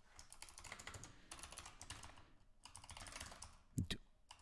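Faint computer keyboard typing in quick runs of keystrokes, broken by a short pause at about two and a half seconds.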